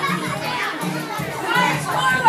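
Dance music with a steady beat plays over a crowd of excited girls' voices calling out and squealing as they dance together in a large room.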